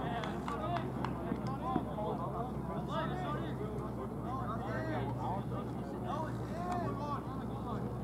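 Players' distant voices calling and shouting across a soccer field, over a steady low hum. There is one short sharp knock a little under two seconds in.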